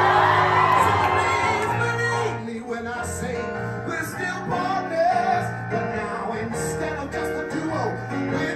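Live singing through a handheld microphone and PA: the singer belts a long held note at the start, then sings short phrases over sustained amplified keyboard chords, with shouts and whoops from the street crowd.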